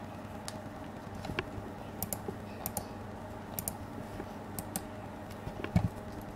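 Light, irregular clicks, often in pairs, from a metal crochet hook and fingers working fine thread, with a heavier low thump near the end as the hands move.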